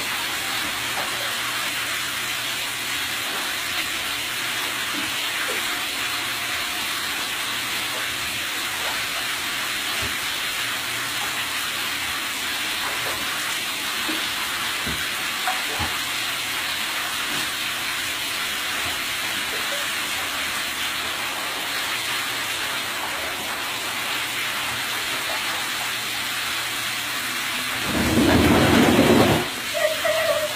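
Bath tap running steadily into a tub of shallow water, a constant even rush of water. Near the end comes a louder, deeper burst of noise lasting about a second and a half.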